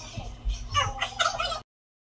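Raised voices hooting and shouting as a shot is drunk, cut off suddenly into dead silence about one and a half seconds in.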